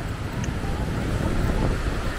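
Seaside ambience: wind rumbling on the microphone over a steady distant engine drone.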